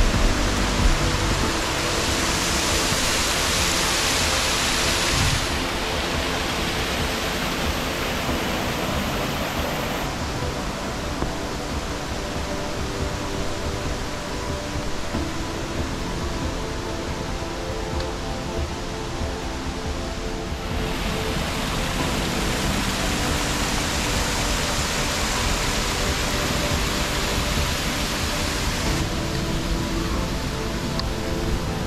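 Steady rushing water from a stream cascading down a rocky gorge, with background music playing over it. The water's hiss steps abruptly louder or quieter several times, about 5, 10 and 21 seconds in.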